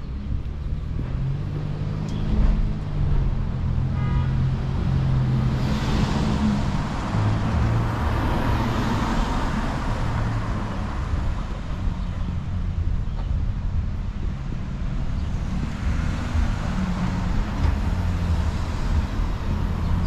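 Street traffic: a vehicle engine runs low and steady throughout, and cars pass by, their engine and tyre noise swelling about six to ten seconds in and again near the end.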